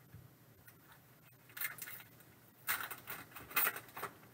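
A foil trading-card pack wrapper crinkling as it is torn open by hand, in a short burst about a second and a half in, then a longer, louder run of crinkling near the end.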